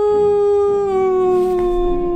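A long, howl-like held "aaaa" in a high voice, one drawn-out note that slides slowly down in pitch.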